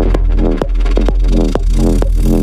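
Techno music with a kick drum on every beat, about two a second, over a steady heavy bass and a pitched synth figure that repeats between the beats.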